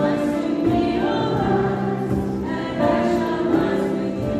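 Church choir of children and adults singing together, holding long notes that change every second or so.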